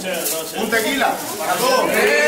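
People's voices talking and calling out, with no music under them.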